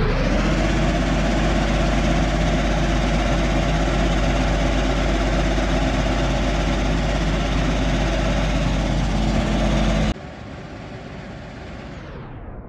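Klöckner KS 3012 vibrating screening machine running under load, with silicon carbide rattling across its wire-mesh screen deck: a loud, steady mechanical drone with a strong low hum. About ten seconds in, the sound drops abruptly to a lower level.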